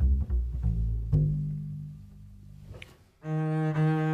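Double bass played pizzicato: a few plucked low notes, the last left to ring and fade. About three seconds in, the bow is drawn across a string and a held arco note begins.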